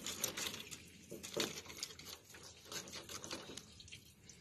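Fillet knife cutting into a bowfin's tough skin and bones on a metal fillet table: an irregular string of small crackles and crunches.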